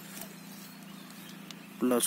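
Low, quiet background with a faint steady hum and a couple of soft ticks, then a voice starts speaking just before the end.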